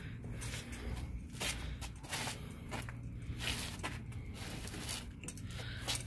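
Footsteps on concrete: irregular soft scuffs and clicks, about one or two a second, over a low steady hum.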